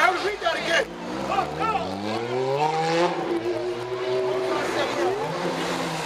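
A vehicle engine on the street revs up, its pitch rising steadily for about two seconds, then holds a steady higher note for a couple of seconds, with voices around it.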